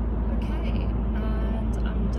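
Car cabin noise while driving: a steady low rumble of engine and road noise heard from inside the car.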